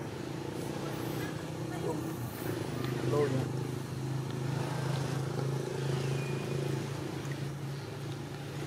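Voices in the background over a steady low hum, like an idling engine, with a brief squeal from a scuffling young macaque about three seconds in.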